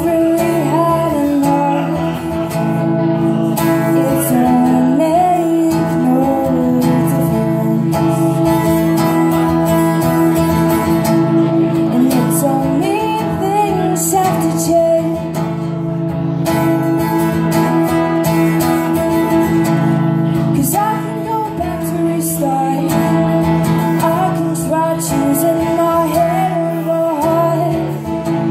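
Live solo performance: a woman singing over a strummed acoustic guitar.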